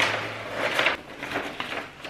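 Scissors cutting through brown kraft wrapping paper and the paper rustling as it is handled. It is loudest at the start and again just before the one-second mark.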